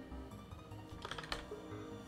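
Faint background music with a few computer keyboard key clicks about a second in, as someone types a search.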